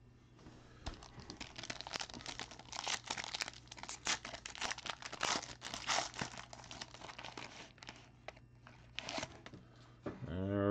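Foil wrapper of a trading-card pack being torn and crinkled by hand, a dense run of crackles that thins out about three-quarters of the way through. A faint steady hum runs underneath.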